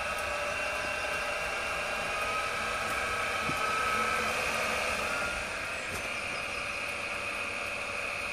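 A bench ignition test rig spinning a Kawasaki KH400 ignition rotor at about idle speed, around 1100 rpm: a steady mechanical whir with a faint high whine, swelling slightly in the middle.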